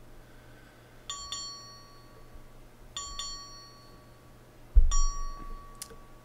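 A bell-like chime sounds three times, about two seconds apart, each time as a quick double strike that rings on and fades. A loud low thump comes with the third chime.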